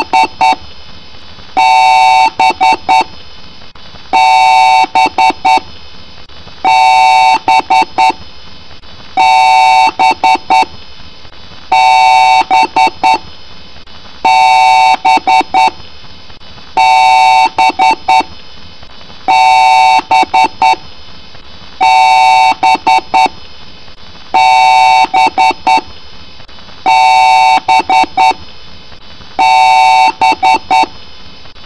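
Computer POST beep code repeating about every two and a half seconds, some twelve times: one long beep, then a quick run of short beeps. The pattern is the kind a PC BIOS sounds when it reports a hardware error at boot. It is pitch-shifted and layered into several pitches by the 'G Major' audio effect.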